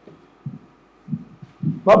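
A pause in a man's speech, broken by a few short, low, muffled sounds, before he starts talking again near the end.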